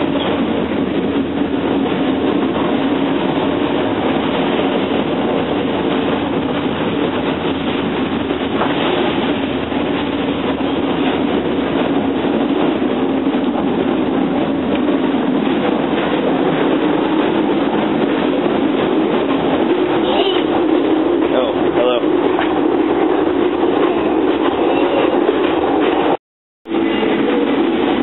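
A passenger train running at speed, heard from inside the carriage corridor: a steady rumble and hum with frequent clicks and rattles from the wheels and coach.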